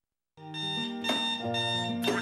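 A moment of dead silence, then music of sustained chords starts about a third of a second in, the notes changing every half second or so.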